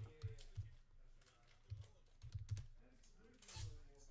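Faint computer keyboard typing: scattered single keystrokes and short runs of clicks, uneven in spacing.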